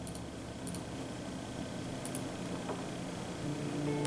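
Quiet room tone with a few faint, short clicks, typical of a laptop trackpad or mouse being clicked while browsing.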